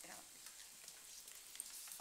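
Near silence: faint, even hiss of room tone from the chamber microphones, with a soft tick near the end.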